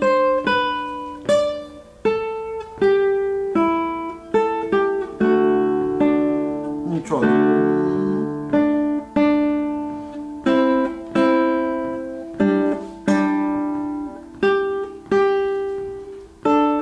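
Nylon-string classical guitar playing a slow melodic line of single plucked notes and two-note chords, each note struck and left to ring and fade. About seven seconds in, a sliding finger squeak on the strings comes as the left hand shifts position.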